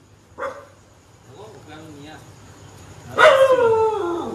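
Dog barking: a short bark about half a second in, then a loud, long cry falling in pitch near the end.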